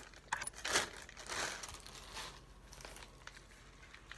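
Plastic poly mailer bag crinkling and rustling as it is pulled open by hand, in a few short bursts over the first couple of seconds, then quieter.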